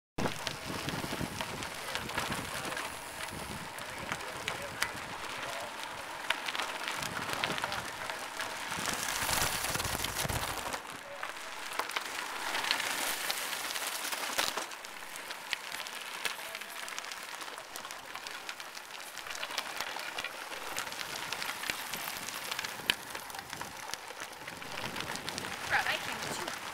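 Bicycle tyres crackling over a gravel and dirt road, a steady stream of small clicks and grit noise. Wind rumbles on the microphone until about ten seconds in.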